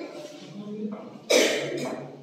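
A person coughing in a room: a sharp, loud cough about a second and a half in, followed by a shorter second cough, after the fading end of another cough at the start.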